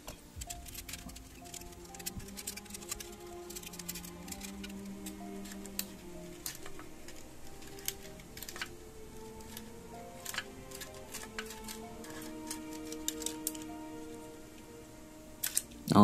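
Quiet orchestral background music with slow held notes. Scattered small clicks and taps come from handling thin aluminium can pieces and small metal craft tools.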